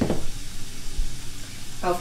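Food frying in a pan on the stove: a steady sizzle.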